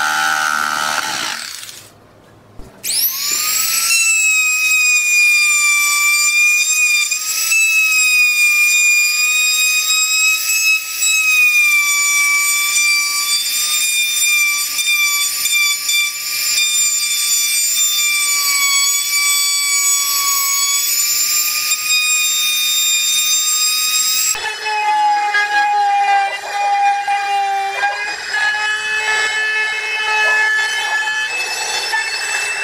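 A jigsaw cutting plywood for the first two seconds. A handheld trim router then starts with a rising whine about three seconds in and runs at a steady high whine. Near the end its pitch drops and turns uneven as the bit cuts into the plywood.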